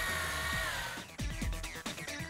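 Electric deep-drop fishing reel motor whining steadily as it winds in line. About a second in, background music with a steady beat takes over.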